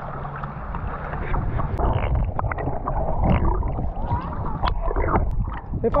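Lake water sloshing and gurgling around a camera held at the surface by a swimmer, muffled as the camera dips underwater, with scattered small splashes and clicks.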